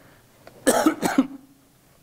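A man coughing twice in quick succession, two short loud coughs a little over half a second in.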